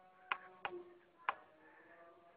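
Three short, sharp clicks or taps, unevenly spaced, over a faint steady hum.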